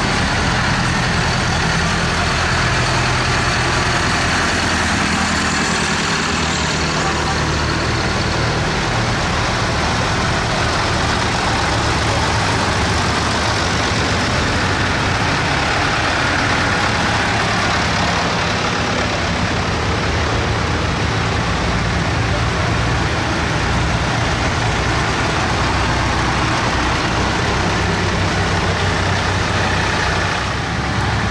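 Vintage farm tractor engines running steadily at low speed as the tractors drive past one after another, including a blue Ford tractor passing close by.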